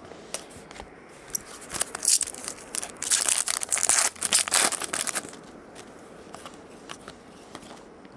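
Foil wrapper of a trading-card pack crinkling and tearing as it is pulled open, a dense crackle of foil from about two to five seconds in, with quieter rustling before and after.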